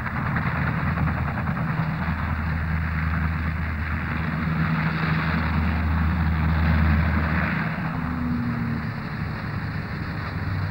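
Fairey Rotodyne compound gyroplane running on the ground after landing, its Napier Eland turboprops and rotor turning: a steady low drone under a hiss. It swells to its loudest about seven seconds in, then eases off.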